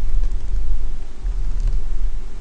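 Steady low hum under a faint even background noise.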